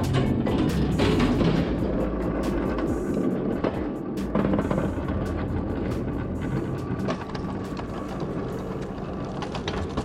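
Hand pallet truck pulled across concrete with a loaded pallet, its wheels rattling and clattering, with music playing underneath.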